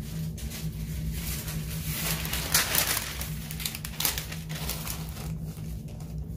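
Sheets of paper rustling and crinkling as they are handled and spread out, loudest around the middle, over a steady low hum.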